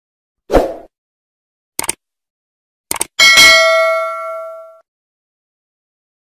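Intro sound effects for a subscribe-button animation: a short thump, two quick clicks, then a bright bell ding that rings out for about a second and a half.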